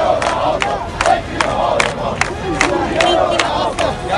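A street crowd of protesters shouting slogans together, loud and many-voiced, with sharp regular beats about two or three times a second.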